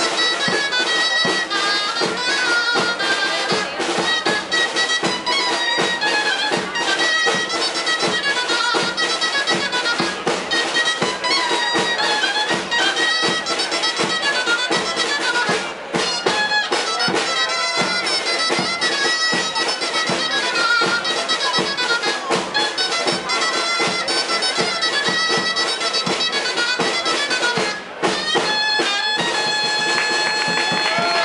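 Dulzaina (Castilian shawm) playing a lively jota melody, accompanied by a snare drum and a bass drum with a mounted cymbal beating a steady, dense rhythm. The music breaks off briefly about halfway through and again near the end.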